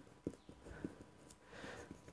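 Faint scratching and small taps of a marker pen writing on paper.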